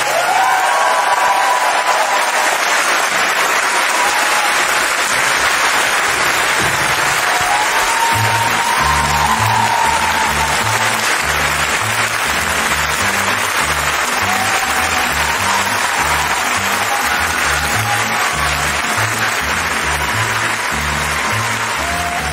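Concert audience applauding after a song ends. About eight seconds in, the band's bass starts a steady, repeating rhythm under the applause, leading into the next song.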